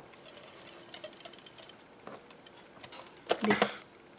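Hands pressing and sliding a strip of patterned paper onto a cardstock card base: faint paper rustles and light taps, then one louder brief rub of paper near the end.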